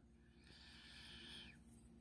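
Near silence, with a faint breathy hiss from about half a second in, lasting about a second: a person breathing out.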